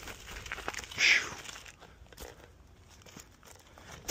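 Scooter tyres rolling and crunching over dry leaves and dirt on a steep downhill trail, with small crackles and a brief rushing noise about a second in.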